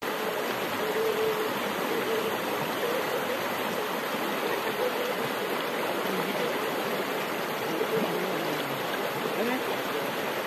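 Shallow, rocky stream flowing steadily over stones, a continuous rushing of water.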